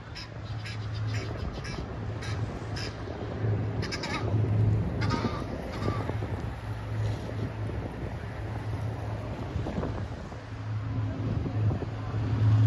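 Gulls calling over the river: a series of short cries, with a longer call about five seconds in, over wind on the microphone and a steady low hum.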